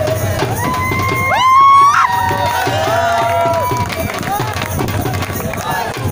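Live Bhangra music: a dhol drum beating a quick steady rhythm under loud, drawn-out shouts and cheering, the loudest a rising shout about a second and a half in.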